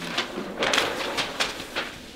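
Large paper plan sheets rustling and crackling as they are flipped over to another page.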